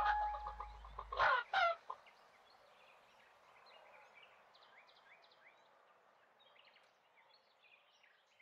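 Orchestral music fading out, then two short loud clucks from a cartoon rooster about a second and a half in, followed by faint scattered high chirping.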